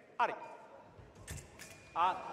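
A short shouted call, then a few sharp clicks of foil blades and footwork on the piste during a quick flick-and-remise exchange. A steady electronic tone from the fencing scoring machine starts near the end as the touch registers.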